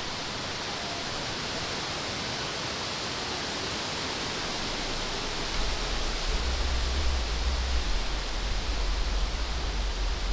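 Wind blowing through the leafy tree canopy as a steady rushing rustle of leaves. About halfway through, gusts start buffeting the microphone with a low rumble.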